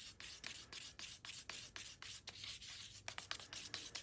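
Faint, rhythmic scraping of a stirrer going round inside a paper cup of thick brown paint thinned with Floetrol and water, about three strokes a second, as it is mixed to pouring consistency.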